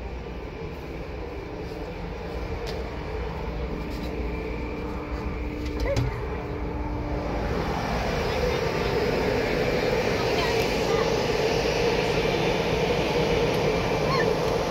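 Steady low background rumble with a faint hum, a click about six seconds in, then a louder steady rushing noise from about eight seconds on as a door opens onto the outdoor car-wash area.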